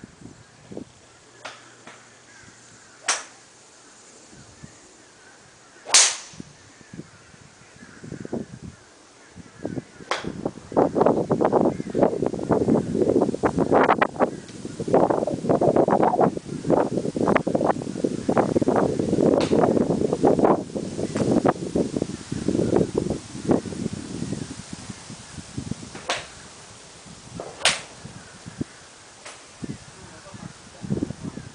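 Sharp cracks of golf clubs striking balls off driving-range mats, a few seconds apart: one about three seconds in, the loudest about six seconds in, and two more near the end, the last as a driver swing finishes. Through the middle there is a long stretch of loud, irregular crackling rustle.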